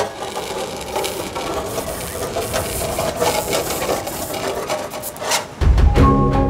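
A sharp metal point scraping along a car's painted door panel: a long, gritty scratch with irregular ticks. A deep boom comes in near the end.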